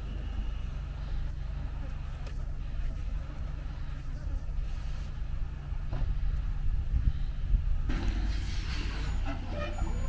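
Road-train truck's diesel engine running steadily at idle, a low hum, while its trailer stands tipped up. About eight seconds in, a louder, busier stretch of engine and mechanical noise comes in.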